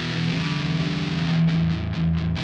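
Schecter Avenger 40th Anniversary electric guitar played amplified, letting chords ring with sustained notes.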